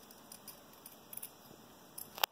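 Faint snipping of steel scissors cutting a leaf shape out of felt: a few quiet, short snips.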